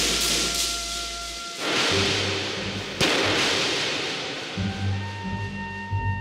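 Pistol shots over a dramatic music score: one bang as it begins, another about a second and a half later, and a sharper crack about three seconds in. Each fades slowly into a long echoing tail. Held music tones run underneath, and low bass notes come in near the end.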